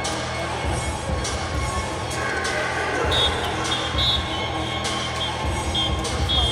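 Music played over the venue's sound system, with a heavy bass beat.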